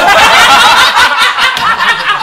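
A group of men laughing loudly together, several voices overlapping in one continuous burst of laughter.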